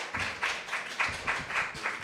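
Audience applauding: many scattered hand claps.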